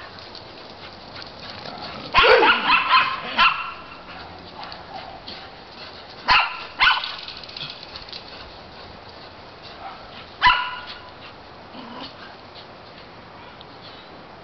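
Dogs barking during a chase along a fence: a quick run of several barks about two seconds in, a pair around six seconds, and a single bark past ten seconds.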